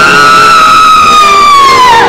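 Operatic soprano giving one long, very loud shriek that starts high and slides slowly down in pitch, with the orchestra beneath it: the awakening cry of a character summoned out of sleep.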